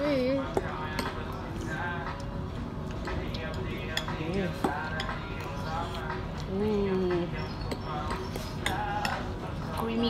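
Restaurant background chatter with light clinks of a metal fork against a ceramic bowl as spaghetti is twirled, one sharp clink about halfway through.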